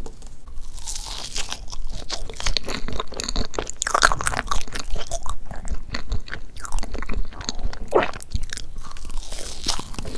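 Close-miked chewing of soft chocolate crepe cake, with many small, wet mouth clicks throughout. A wooden fork cuts into the layered cake.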